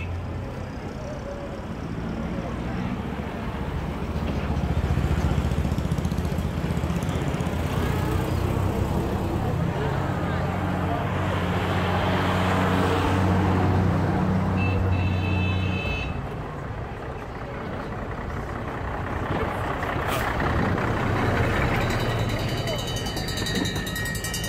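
Engines of WWII-era military vehicles driving slowly past at close range: a jeep, then a heavy army truck that is loudest around the middle, then a truck towing an artillery gun, with crowd voices around them.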